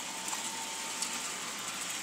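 American Flyer Silver Rocket toy freight train, its twin-motor Alco diesel unit pulling six cars around S gauge track, running with a steady even whir; one light click about a second in.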